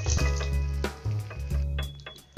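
Background music: held tones over a low bass line that changes note every half second or so, growing quieter near the end.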